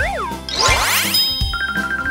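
Cartoon sound effects over a children's backing track with a steady beat: a wobbling whistle-like glide falling in pitch as the letter slides, then a quick rising sweep about half a second in, then a bright ding-like tone pulsing steadily.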